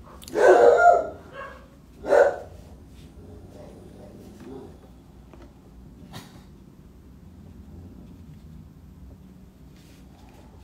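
Corgi barking: a burst of barks about half a second in, then a single bark at about two seconds.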